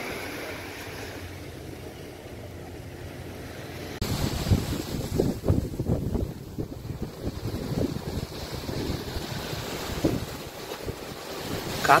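Wind buffeting the microphone over the steady wash of surf on a beach; about four seconds in, the wind gusts turn stronger and choppier.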